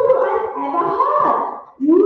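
A performer's voice speaking lines of the play, continuous and hard to make out because of the recording's sound problems.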